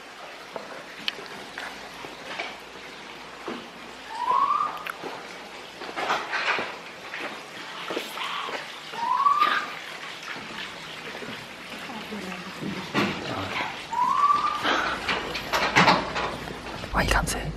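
Three short rising whistled calls, each sliding upward for under a second, about five seconds apart, over hushed whispering.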